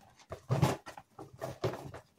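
Rustling and crinkling from items being handled and packed into a small bag, in several uneven bursts, the strongest about half a second in.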